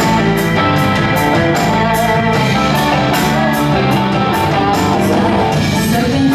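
Live rock band playing an instrumental passage without singing: electric guitars, bass, Hammond B3 organ, piano and drum kit. Cymbal strokes keep a steady beat of about three a second.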